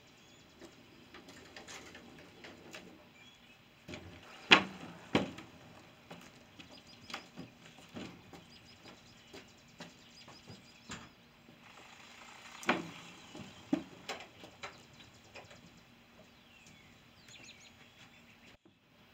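Enclosed cargo trailer's rear ramp door being unlatched and lowered, with scattered metal clanks and knocks, the loudest two close together about four and a half seconds in and another pair near thirteen seconds. Footsteps on the ramp and wooden trailer floor follow, and birds chirp faintly.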